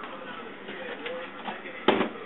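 Quiet room tone with faint background voices, and a single sharp knock near the end.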